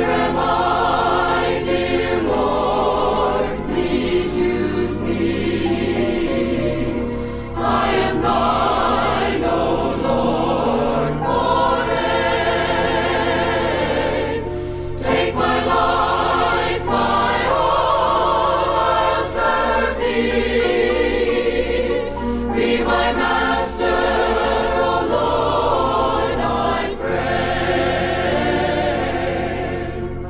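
A large mixed choir of about forty voices singing a gospel song in sustained chords over a steady low accompaniment, as a music recording.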